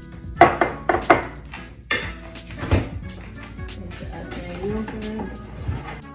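A small glass dish knocking sharply four times in the first three seconds, over background music.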